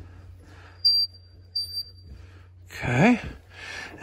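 Two short, high, steady whistles, the second about two-thirds of a second after the first, as a valve is opened to let water back into the line. Near the end comes a man's brief voiced 'hmm', over a steady low hum.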